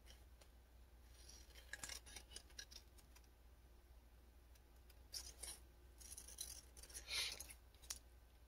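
Small scissors snipping through a book page, trimming out a printed image: a few faint snips in three short runs.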